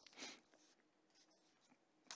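Near silence in a small room, broken by one faint, brief rustle of paper at the lectern about a quarter second in.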